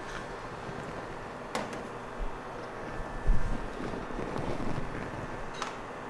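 Bar tools and glassware being handled on a steel bar counter: a light click about one and a half seconds in, a dull thump a little after three seconds, and another click near the end, over a steady background hum.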